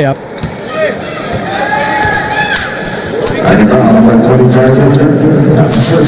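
Basketball arena game sound: crowd noise with the ball bouncing and sharp clicks and short squeaks from play on the court. About three and a half seconds in, a louder, steady, sustained pitched sound joins and carries on.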